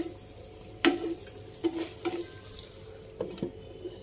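A spatula stirring penne in sauce in a nonstick frying pan, with several sharp, irregular knocks and scrapes against the pan over a faint frying sizzle. Near the end, a couple of knocks as a glass lid is set on the pan.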